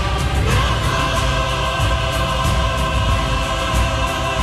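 A choir singing with an orchestra in long held chords, moving to a new chord about half a second in.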